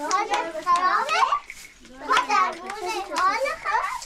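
Young children's high-pitched voices, talking and calling out to each other as they play, with a short lull about halfway through.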